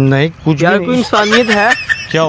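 Loud, strained male voices shouting without clear words in a heated scuffle.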